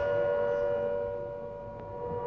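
Electric civil-defence siren sounding the signal for breaking the fast, holding a steady pitch and fading a little toward the end.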